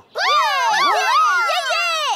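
Several cartoon character voices calling out together, their pitches gliding up and down over one another, lasting about two seconds.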